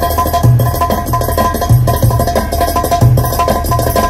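Loud Turkish dance tune (oyun havası) from an electronic arranger keyboard through loudspeakers, with a steady, repeating drum beat under held keyboard tones.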